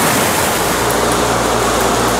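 Swollen, turbulent river water rushing over rapids: a loud, steady wash of water, with a low rumble joining about half a second in.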